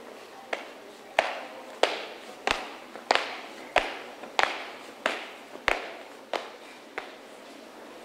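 Marching footsteps of a small squad of uniformed students striding in step on pavement: about eleven sharp stamps, roughly one and a half a second, each followed by a short echo. They grow louder, then fade near the end.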